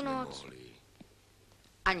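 Speech only: a spoken word trails off in the first half-second, then a quiet pause, and another word begins near the end.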